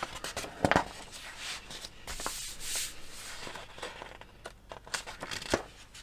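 Paper rustling and crinkling as the pages of a large printed instruction booklet are handled and turned, with a few sharp clicks and a brief rushing swish near the middle.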